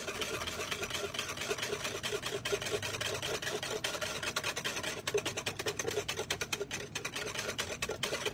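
Wire whisk beating a frothy mixture of water and baking powder in a plastic bowl. The whisk scrapes and splashes in a fast, even rhythm of about five strokes a second, foaming the liquid up.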